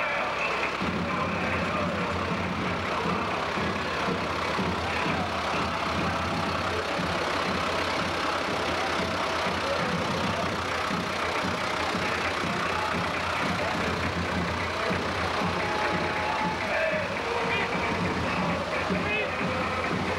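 A Ford farm tractor's engine running steadily at low speed as the tractor passes close by, with voices around it.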